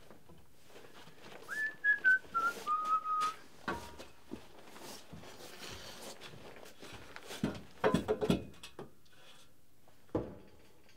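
A person whistling a short tune of a few notes that step downward in pitch, then several sharp knocks of timber being handled near the end.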